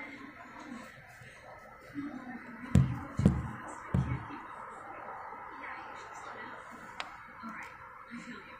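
A person says a few words and laughs close to the phone's microphone, the laughs landing as three short low thumps a little under three seconds in, over steady faint background noise.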